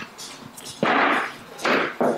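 A loaded barbell jerked from the shoulders to overhead: a sudden, noisy burst about a second in as the bar is driven up and the lifter drops under it, then a second, shorter burst just before the end.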